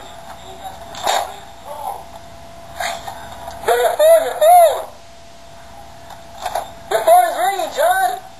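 A person's voice in two bursts of short rising-and-falling calls, with a few sharp knocks in between.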